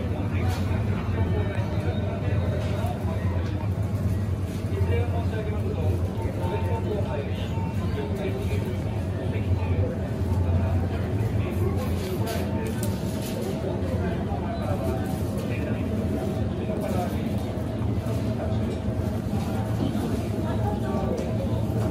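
Supermarket ambience: a steady low hum with indistinct voices in the background.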